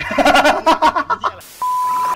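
A man laughing loudly in quick bursts. About a second and a half in, this gives way to a steady beep tone over static hiss: a TV test-card sound effect.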